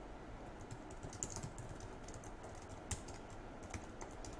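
Typing on a computer keyboard: a run of faint, irregular keystrokes, one of them a little louder about three seconds in.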